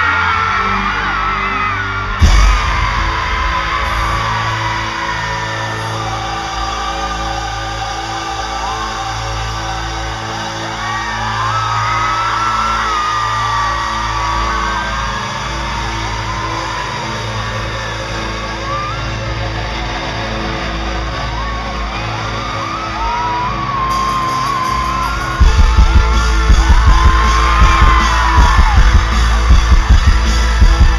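Live rock band in a large hall: a sustained drone under steady crowd screaming and whooping, with a single loud bang about two seconds in. Near the end, heavy drums come in with loud repeated hits.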